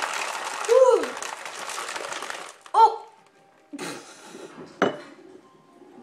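Ice cubes rattling inside a lidded plastic tumbler of iced coffee as it is shaken hard to mix in the sugar. The shaking stops about two and a half seconds in, followed by a couple of brief knocks.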